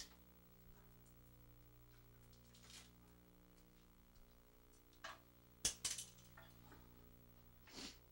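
Faint snips and crackles of scissors cutting through tape and the tape being pulled off a bundle of wires: a handful of separate short clicks, the loudest cluster about two-thirds of the way through, over a low steady hum.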